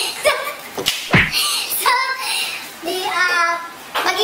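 Two young women laughing, with a few sharp smacks in the first second and a half, the loudest just after a second in.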